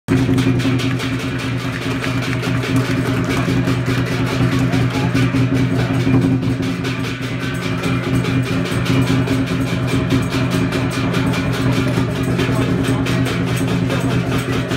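Lion dance percussion: drum, cymbals and gong playing a fast, steady beat, the cymbal crashes repeating several times a second over a sustained low ring.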